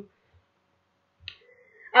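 A pause of near silence broken by a single short click a little over a second in, then a faint brief sound just before speech resumes.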